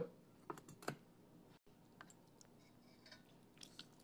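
Near silence, broken by a few faint, brief clicks and soft wet sounds of a bread sandwich being dipped in gravy and bitten into.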